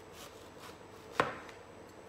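Sharp kitchen knife slicing lengthwise down through a zucchini into thin strips, with one sharp knock against the cutting board about a second in.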